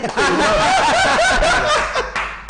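Several men laughing loudly together, their chuckles and laughs overlapping.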